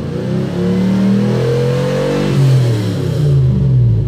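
Toyota 1UZ-FE V8 engine held at about 3000 rpm with no load, its pitch rising slowly, then easing off and falling back toward idle over the last second and a half. On this gentle throttle it revs cleanly: the ECU's throttle-position idle-switch fault only makes it die when the throttle is stomped.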